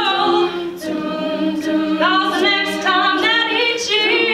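All-female a cappella group singing live: a lead soloist on a microphone over sustained backing harmonies from the other voices, with no instruments.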